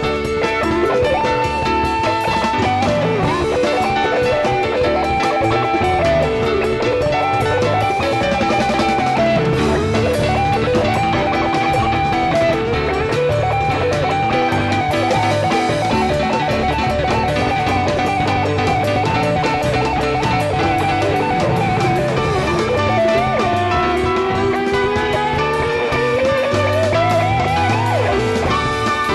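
Live rock band playing an instrumental jam: an electric guitar plays a bending lead line over bass and the rest of the band. A long rising glide in pitch climbs over the last few seconds.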